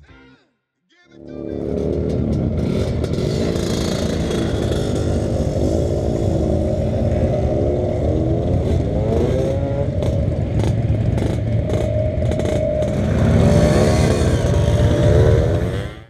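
Several two-stroke scooters riding off one after another, their engines revving and rising and falling in pitch as they pull away and change gear, overlapping. It starts about a second in and is loudest near the end.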